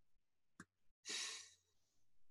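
A man's short, audible breath out, like a sigh, about a second in, just after a faint click.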